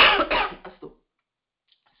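A person coughing: one loud cough followed by a couple of shorter, quieter ones.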